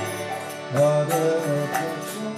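Devotional kirtan music: a man sings a mantra over the held reed chords of a harmonium, and the sound swells louder a little under a second in.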